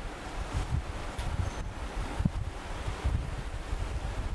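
Low, uneven rumble of microphone and room noise during a pause in speech, with a faint click about two and a quarter seconds in.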